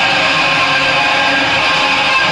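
A rock band's distorted electric guitars playing live, with chords held and ringing at a steady loud level.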